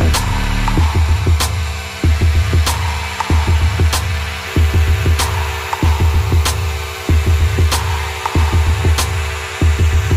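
Electronic background music with a steady beat, deep bass pulses and a sharp hit about every one and a quarter seconds.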